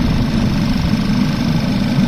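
Audi A4 B8 engine idling steadily with the hood open, the alternator under full electrical load from the heater, blower fan and lights.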